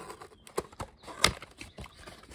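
Cardboard-and-plastic retail trading-card blister pack being handled by hand: a scatter of short sharp clicks and taps, the loudest a little past halfway.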